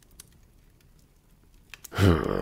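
A quiet pause: faint low background noise with a few small, sharp clicks, two of them close together just before the voice comes back.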